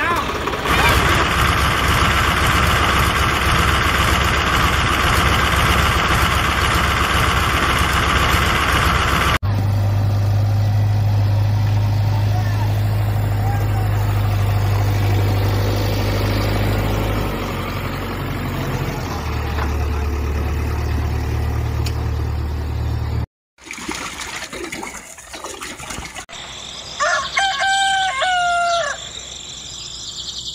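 A loud steady rushing noise, then a low steady engine-like hum that shifts pitch twice, cut off abruptly. Near the end a rooster crows once, for about two seconds.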